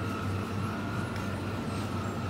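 Supermarket ambience: a steady low rumble from a shopping cart rolling along the aisle, under a constant thin high hum from the refrigerated display cases.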